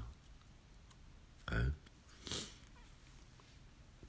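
Mostly quiet room tone, broken by a brief man's voice saying "oh, okay" about a second and a half in, then a short soft hiss just after.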